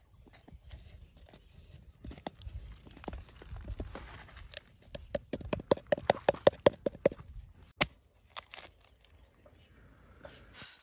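Hollow knocks on a bamboo cooking tube as it is tapped to empty out its cooked contents. Scattered knocks come first, then a quick run of about a dozen, about six a second, between five and seven seconds in, and one sharp click near eight seconds.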